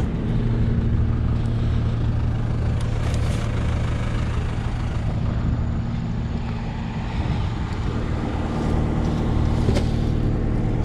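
Engine idling steadily with a low, even hum, likely farm machinery, with a few light knocks as plastic plug trays of strawberry plants are handled.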